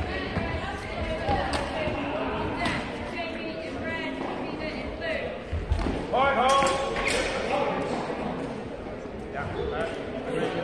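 Footfalls and knocks on a sports-hall floor over steady background chatter in a large, echoing hall. About six seconds in, the two longsword fencers close, with a quick flurry of sharp knocks of sword strikes and a loud shout.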